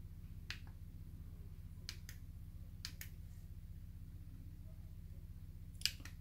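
Remote control buttons clicking as they are pressed: about six short, sharp clicks, some in quick pairs, over a steady low hum.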